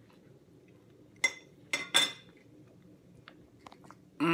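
A metal fork clinking against a dish three times, about a second in, the last two close together, each with a short bright ring.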